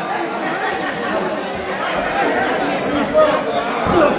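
Wrestling crowd chattering and calling out, many voices overlapping and no single speaker clear, with a short thump near the end.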